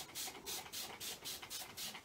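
Small finger-pump mist spray bottle squirted rapidly, about four or five short hisses a second, spraying clean water into a wet watercolour wash.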